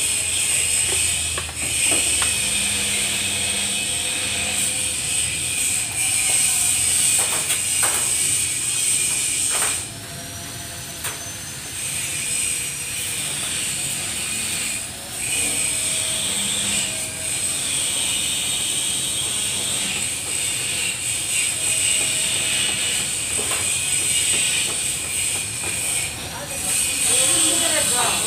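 Electric angle grinder running against a bus's steel body panel: a steady high whine that drops briefly about ten seconds in, and again around fifteen and twenty-six seconds.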